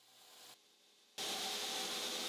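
Belt grinder grinding a steel blade blank: near silence, then about a second in a steady hissing grind with a faint whine starts abruptly. This is the profiling stage, grinding back to clean steel before the bevels are ground.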